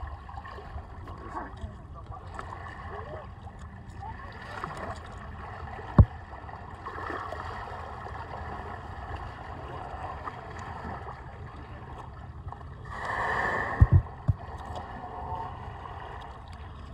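Water sloshing and gurgling against a small boat's hull as a grey whale moves alongside, over a steady low rumble. A single sharp knock about six seconds in, and near the end a rushing whoosh of about a second followed by two quick knocks.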